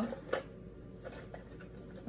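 Plastic drinking straws clicking against each other in a holder as one is picked out: one sharp click about a third of a second in, then a few faint light ticks.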